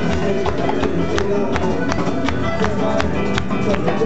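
Live cuarteto band music, loud and steady, with a beat of about three percussion strikes a second.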